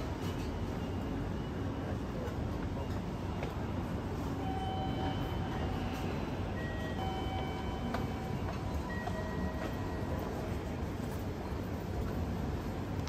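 Busy railway station concourse ambience: a steady crowd rumble of commuters walking, with scattered faint footstep clicks, distant voices and a few brief faint tones.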